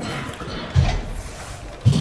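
A pause in a man's speech: steady background noise, a brief low vocal sound, like a hesitation, about a second in, and his voice resuming near the end.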